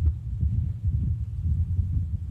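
Low, uneven background rumble.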